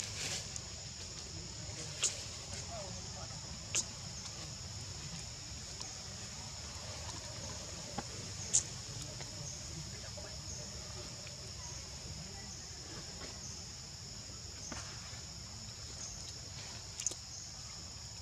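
Steady insect chorus: a continuous high buzz held at two pitches, with a few short, sharp clicks scattered through it.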